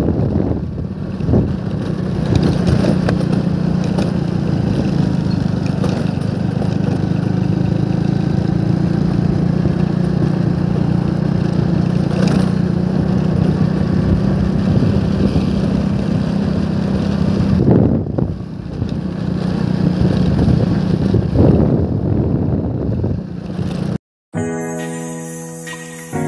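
The engine of a moving road vehicle running at a steady cruising speed, with road and wind noise. A couple of brief knocks in the last third, like bumps in the road.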